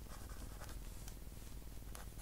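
Faint scratching of a pen on squared paper as figures are written by hand in short strokes.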